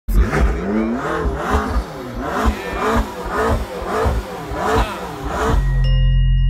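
Sports car engine revved in quick repeated blips, about two a second, each rising and falling in pitch. Music with a low bass note comes in just before the end.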